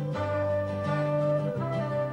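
Band instrumental introduction to a pop song: a long held note over a bass line that steps to a new note every second or so, with no singing yet.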